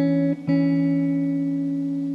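Background music on plucked guitar: a chord struck about half a second in, left to ring and slowly fade.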